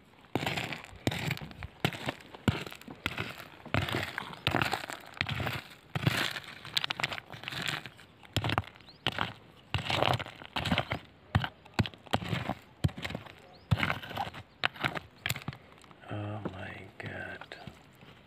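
Small rock hammer digging into stony, gravelly ground: a fast, irregular series of sharp knocks and gritty scrapes as stones are struck and pried loose.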